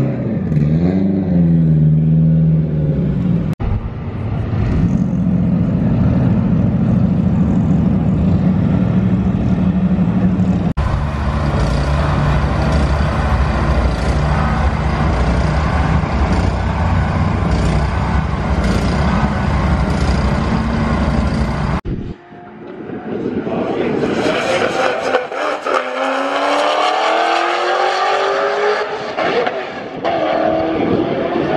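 High-performance car engines running, with a steady engine note through most of the clip. In the last several seconds a drag car accelerates hard down the strip, its engine note rising steadily.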